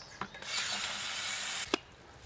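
Garden hose spray nozzle running water into a five-gallon bucket: a steady spray hiss that starts about half a second in and cuts off suddenly with a click a little over a second later.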